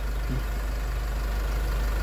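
Steady low mechanical hum with no beeps.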